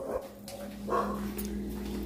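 A dog barking once, briefly, about a second in, over a steady low hum.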